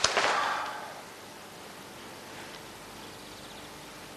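A brief swish of a fabric jacket being handled, fading within about a second, then quiet room tone.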